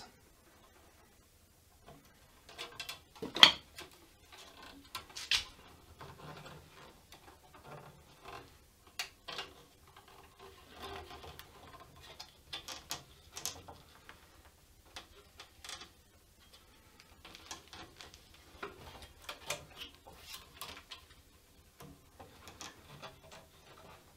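Screwdriver shaft and fingertips pressing and rubbing heat-softened plastic binding against a wooden guitar neck: scattered faint rubs and light clicks, with a sharper tap about three and a half seconds in.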